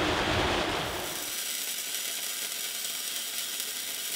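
Rain and wind noise for about the first second, then a MIG welder's arc crackling steadily as it lays a weld bead on steel.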